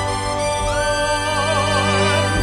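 A slow ballad arrangement of sustained accompaniment chords. About two-thirds of a second in, a singer's voice slides up into a long held note with vibrato.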